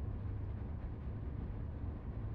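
A steady low rumble with a faint hiss above it and no distinct events.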